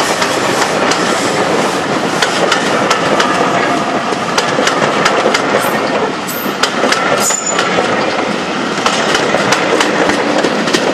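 A train of passenger coaches rolling past close by: a steady rumble of running wheels with a quick run of clicks as they cross the rail joints. There is a brief high squeal about seven seconds in.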